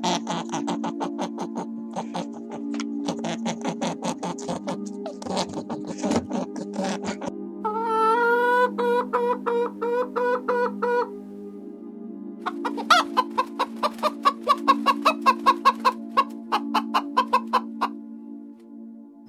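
Chickens calling: a long wavering call about eight seconds in, then a fast run of loud clucks over the last third, all over steady background music. The first seven seconds hold rapid crunchy clicking.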